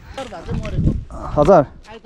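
Voices talking, with a short, loud cry that rises and falls in pitch about one and a half seconds in.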